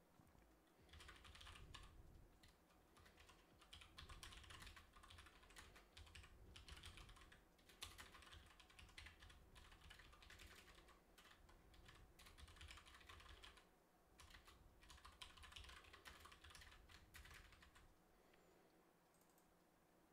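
Faint typing on a computer keyboard, in short bursts of rapid key clicks with brief pauses, stopping a couple of seconds before the end.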